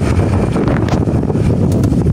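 Wind buffeting the microphone: a loud, steady low rush.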